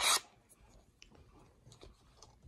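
Faint rubbing and a few small scattered clicks of a screw-on wide-angle lens attachment being twisted onto a camera by hand.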